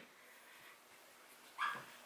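Mostly near silence, broken near the end by one short, faint, high-pitched vocal sound, a brief whimper or murmur.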